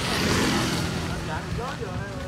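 Small motorbike engine idling close by with a steady low pulse, a louder rushing noise swelling over it in the first second, and brief voices near the end.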